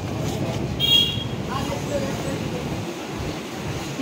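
Busy street background: a steady rumble of traffic with faint voices, and a brief high-pitched tone about a second in.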